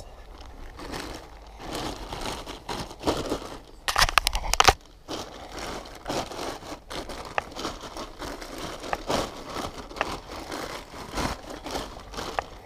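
Plastic sheeting being pulled and pressed into place by gloved hands, crinkling and rustling irregularly, with a louder burst of crackles about four seconds in.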